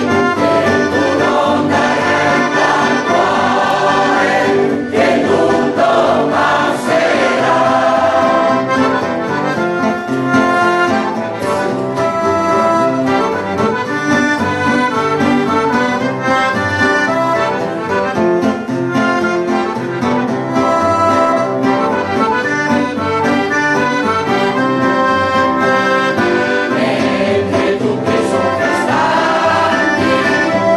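A mixed choir of men's and women's voices singing a song in harmony, accompanied by an accordion.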